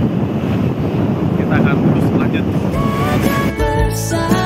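Wind buffeting a phone microphone on a moving motorcycle, a dense low rumble. Music comes in about three seconds in.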